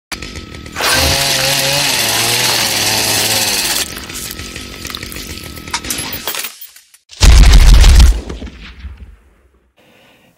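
Intro sting for the channel's logo card. A loud, dense grinding noise with a wavering pitch lasts about three seconds and fades. A little after seven seconds comes a heavy, deep boom that dies away over the next two seconds.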